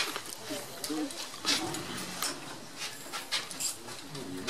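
Horse-drawn rail tram moving at a walk: irregular clicks and knocks from the car and the horse's harness, with quiet voices talking.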